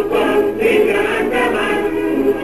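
Choral music: a choir singing held notes together.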